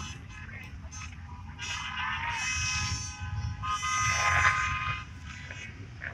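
Parade of pickup trucks driving past on a road, the tyre and engine noise swelling twice as vehicles go by, with a steady pitched tone held through the middle seconds.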